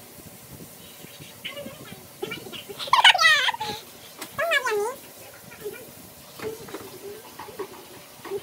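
A girl's nervous high-pitched squeals, two of them about three and four and a half seconds in, the first the loudest and sliding down in pitch. They come from fear as her gloved hand reaches in after a betta fish.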